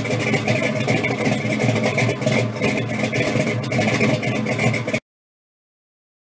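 Car engine idling steadily. It cuts off abruptly about five seconds in.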